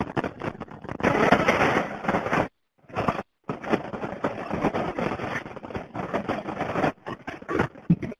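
Sound of a played recording from a crashed Tesla's fire scene: a loud, rough noise with sudden pops and bangs, dropping out briefly a few times.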